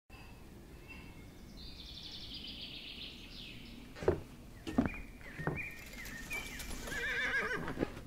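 A horse whinnies once, a falling call about two seconds in, followed by a few sharp knocks between about four and five and a half seconds, then thin high wavering tones that turn into a quick warble near the end.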